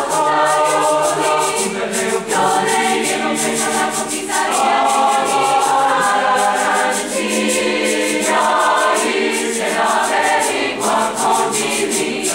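Mixed high-school concert choir singing in several parts, with a quick, even rhythm of sharp high ticks beneath the voices.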